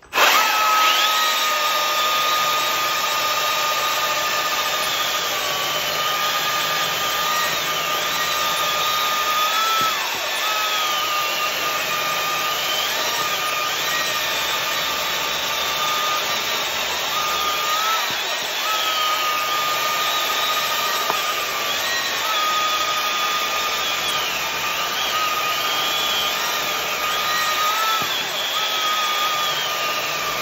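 Stihl battery chainsaws, an MSA 220 C and an MSA 300 C, cutting through log rounds side by side. Their electric motors make a steady high whine that starts abruptly, with the pitch rising briefly and dropping again several times as cuts break through and the next begin.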